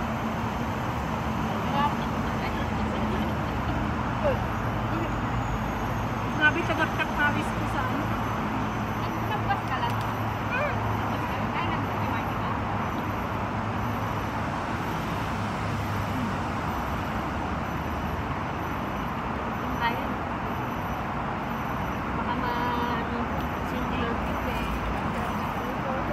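Steady city traffic noise with a low engine hum that fades out about two-thirds of the way through, under faint voices and a few sharp clicks.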